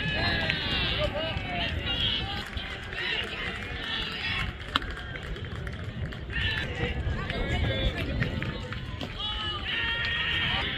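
Players and spectators calling out and chattering at a distance, over a steady low wind rumble on the microphone, with one sharp clack a little before the middle.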